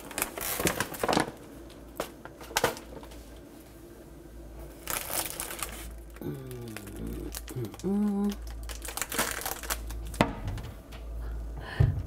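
Crinkling of plastic and foil chocolate wrappers and bags, with scattered clicks and knocks as packets and boxes are taken from a kitchen cabinet. A couple of short murmured sounds come from a voice partway through.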